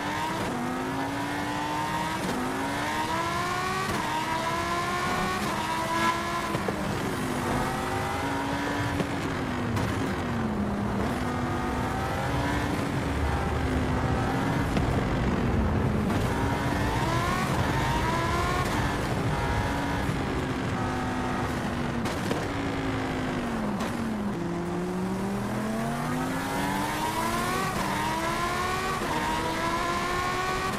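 Victrip Janus e-bike's electric motor whining under pedal assist at about 20 mph, its pitch rising and falling over and over as the speed changes, with wind rushing on the microphone.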